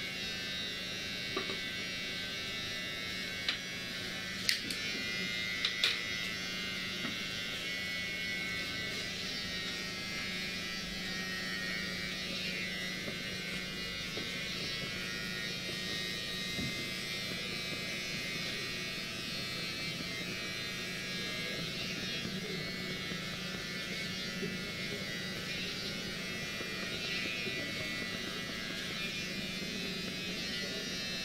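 Electric hair clippers buzzing steadily, with a few sharp clicks of tools or bottles being handled in the first several seconds.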